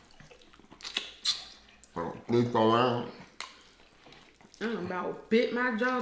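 Wet mouth sounds of eating: short chewing and lip-smacking clicks about a second in, then appreciative hummed "mm" sounds, the last running on toward the end.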